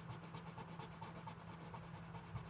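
Pink Crayola colored pencil scratching faintly on drawing paper in repeated strokes, pressed hard to lay down bold colour, over a low steady hum.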